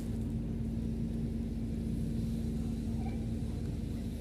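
A steady low rumble with a constant low hum running through it.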